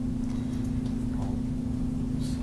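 Steady low electrical-sounding hum with a rumble beneath it, with a couple of faint clicks about half a second in.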